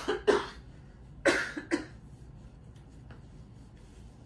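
A person coughing, four coughs in two pairs about a second apart.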